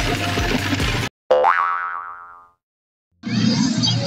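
A cartoon 'boing' sound effect: one springy, rising-pitched twang that fades out over about a second. It sits in a moment of complete silence, with the pachinko machine's music cutting off just before it and coming back near the end.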